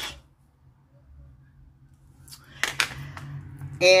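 Quiet room hum, with a short rustle of something being handled about two and a half seconds in.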